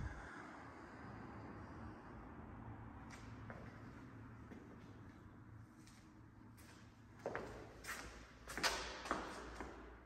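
Faint room noise with a low steady hum, then footsteps on a hard floor near the end: about five steps in a row.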